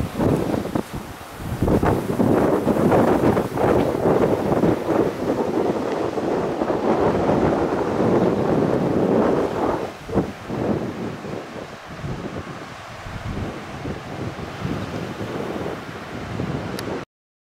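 Wind buffeting a handheld camera's microphone in gusts, a loud rushing that eases somewhat after about ten seconds.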